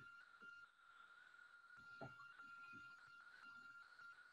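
Near silence: faint room tone with a thin, steady high tone and a few soft knocks.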